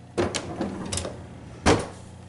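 A kitchen drawer full of pots and pans being slid shut, the pots rattling and clinking as it moves, then a loud knock as the drawer hits closed near the end.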